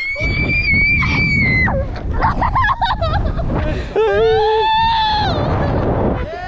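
People screaming as they drop from a bridge on a rope swing: one long high scream that cuts off a little under two seconds in, then a second long scream from about four seconds in, with wind rushing over the camera microphone during the fall.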